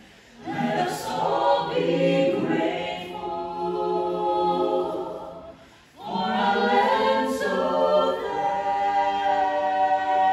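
Mixed men's and women's a cappella vocal ensemble singing in harmony, in a resonant domed rotunda. One phrase enters about half a second in and fades away, and after a brief break a new phrase begins near the middle.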